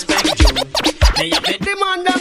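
DJ mix music with turntable-style scratch effects and two heavy bass hits about half a second apart, a transition passage in a reggae/dancehall mix, giving way to steadier sustained tones near the end.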